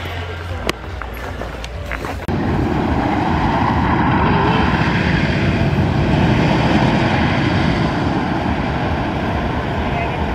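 Raven, a Custom Coasters International wooden roller coaster, with its train running on the wooden track: a steady rumble that starts abruptly a couple of seconds in. Before it there are a few light knocks.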